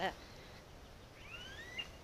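A bird's two rising whistled notes about a second and a half in, over a low rumble of wind on the microphone.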